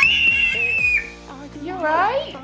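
A little girl's high-pitched excited squeal, held on one note for about a second. A shorter rising vocal squeal follows near the end.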